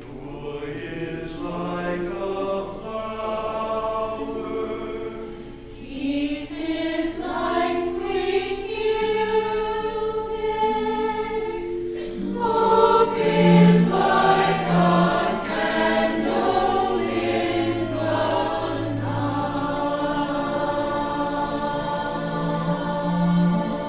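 Mixed choir of men's and women's voices singing in harmony, holding long notes, growing louder about halfway through.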